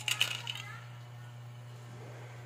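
Metal spoon clinking a few times against a stainless steel cooking pot, a quick run of light metallic taps in the first half-second or so. A steady low hum runs underneath.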